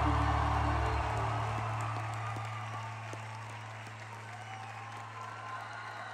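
A live band's song ending: the final chord cuts off about a second in, leaving one low sustained note ringing, while the arena audience applauds and cheers, the applause dying away over the next few seconds.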